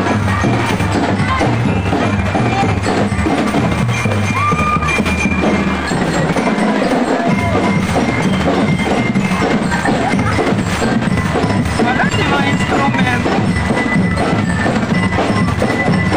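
Marching parade band playing a continuous tune: bell lyres ringing out the melody over a steady beat of drums.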